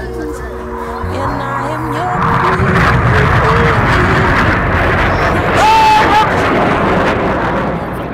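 Jet noise from Red Arrows BAE Hawk T1 jets passing overhead in a crossing manoeuvre. The noise swells from about two seconds in and stays loud, loudest near the six-second mark, while music from the public address fades out in the first seconds.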